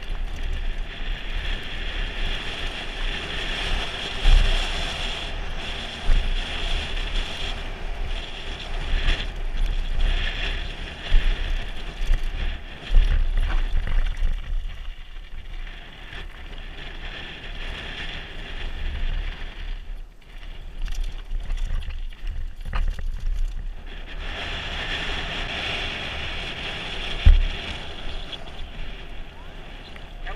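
Wind buffeting the microphone over the rumble and rattle of a Trek Remedy mountain bike rolling fast down a loose gravel and dirt trail. There are a few sharp thumps from bumps, the loudest near the end.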